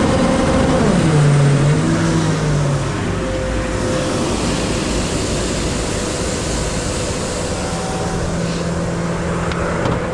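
Sewer jetter truck's engine and high-pressure pump running. About a second in the engine winds down steeply from high revs to a lower, steady idle, then keeps running with a constant rushing noise.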